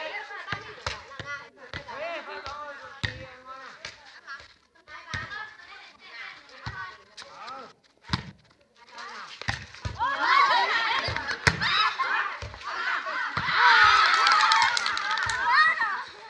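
Many voices of volleyball players and onlookers calling, shouting and laughing over one another, growing louder and more excited from about ten seconds in, with a few short dull thumps scattered through.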